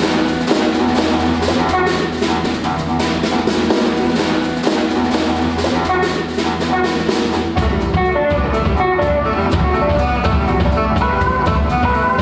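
Live jazz played by a small band: a hollow-body electric guitar plays melodic lines over drums keeping a steady, even beat. The low notes change about two-thirds of the way through.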